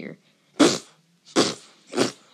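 A child's voice making three short, breathy mouth-noise bursts, each a fraction of a second with silence between: sound effects voiced for the battle.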